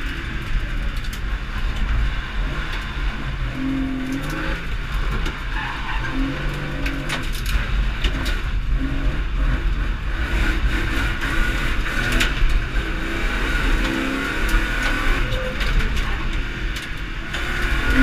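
A competition car's engine revving up and falling back again and again as it is driven hard, heard from inside its stripped, bare-metal cabin.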